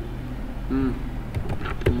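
A few quick computer keyboard keystrokes as a word is typed, clicking in quick succession in the second half, over a steady low hum.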